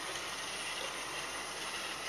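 Roomba robot vacuum's wheel drive motors running steadily as it turns left in place, obeying a DTMF tone command sent from a phone.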